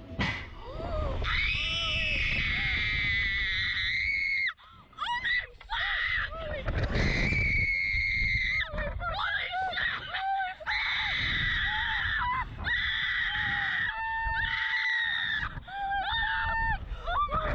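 Two young women screaming on a slingshot reverse-bungee ride as it launches: a run of long, high-pitched screams broken by short gasps. Wind rushes over the microphone underneath.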